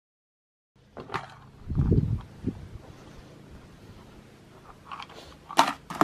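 Silence for under a second, then handling noises: a few sharp clicks and a low thump about two seconds in, with two more clicks near the end, over a faint steady hum.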